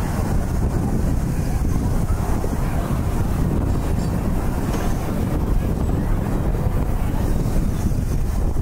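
Steady wind rushing over the microphone as a rider's rocket vehicle on a spinning rocket ride circles through the air at speed.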